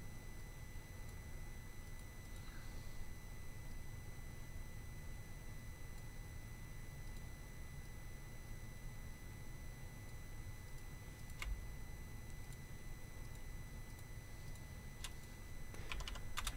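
Faint steady room tone: a low electrical hum with a thin high whine from the recording chain, and a couple of faint clicks late on.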